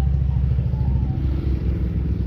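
A motorcycle riding past, its engine a loud, deep drone.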